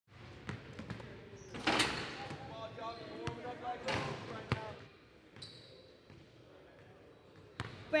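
A basketball bouncing on a gym floor: a handful of separate thuds, the loudest about two and four seconds in, echoing in a large hall, with voices in between.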